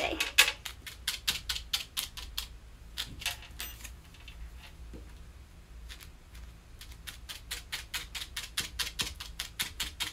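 A felting needle stabbing repeatedly through a ball of wool into a foam pad, quick sharp ticks at about five a second. The ticks thin out in the middle and come fast again for the last few seconds.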